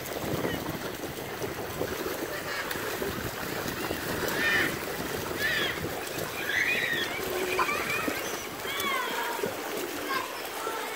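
Swimmers splashing in a pool, with short high-pitched shouts and calls from children rising over the splashing in the second half.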